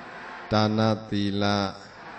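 A Buddhist monk's voice reciting verses in a level, chant-like tone: two short held phrases with brief pauses between.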